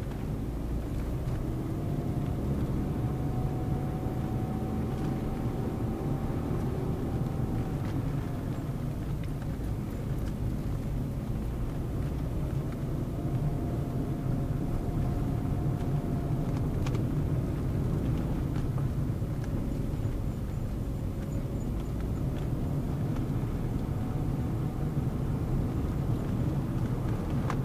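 Car engine and road noise heard from inside the cabin while driving at a steady pace, a constant low rumble with a faint hum that slowly rises and falls in pitch.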